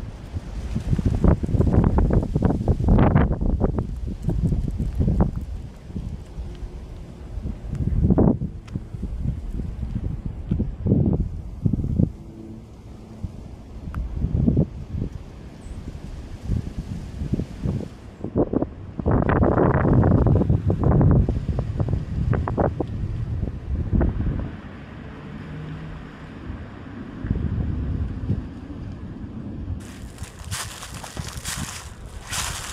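Wind buffeting the camera microphone in irregular gusts: a low rumble that swells and drops, strongest in the first few seconds and again around twenty seconds in.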